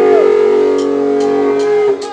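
Electric guitar chord held and ringing with feedback, its pitch bending at the start. Three light ticks come at an even pace under it, like a drummer's count-in, and the chord cuts off sharply near the end.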